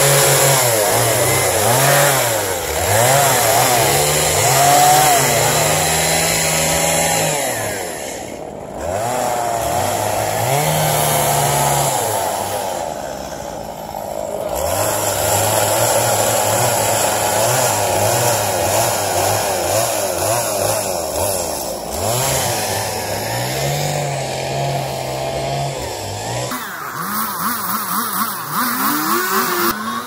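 Chainsaw cutting into a wooden log as a sculpture is carved, its engine revving up and dropping back over and over as the cuts go in. Near the end the saw noise gives way to a quieter, different sound.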